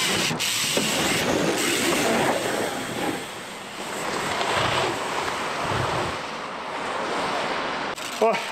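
Mountain bikes rolling down wooden ramps and dirt make a steady rushing noise, with wind on the microphone. There are a couple of short knocks in the first second or two.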